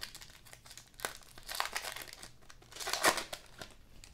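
Foil wrapper of a Panini Select basketball card pack crinkling as it is pulled open by hand, in a few crackly bursts, the loudest about three seconds in.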